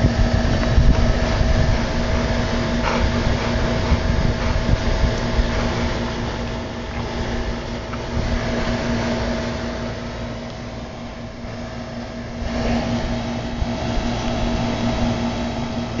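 A steady mechanical hum with two held tones over a low rumble, dipping somewhat quieter around the middle.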